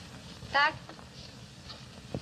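A woman says one short word ("tak") over the steady hiss of an old film soundtrack; otherwise only the hiss.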